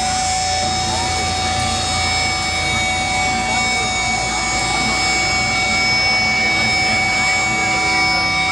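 Electric guitar feedback and distorted amplifier drone from a live metal band on stage: several long held tones over a rough, noisy wash, loud and steady.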